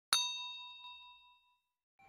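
A notification-bell 'ding' sound effect, struck once just after the start, rings out with several clear tones that fade away over about a second and a half.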